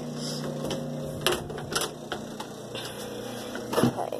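Handling noise of a phone being carried and moved: scattered clicks, knocks and rubbing, with a sharper knock near the end, over a steady low hum.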